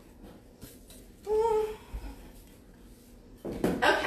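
A woman's voice: one short wordless vocal sound, held for about half a second a little over a second in, then indistinct voice sounds near the end.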